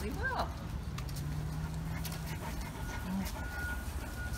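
A Great Dane gives one short, high whine that rises and falls, right at the start. After it come a steady low hum with a few light clicks, and a thin steady tone from about three seconds in.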